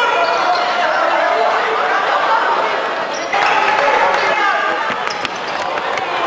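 Indoor futsal play in a large sports hall: players' shouts and calls, with the ball being kicked and bouncing on the wooden court and a few sharp knocks about five seconds in.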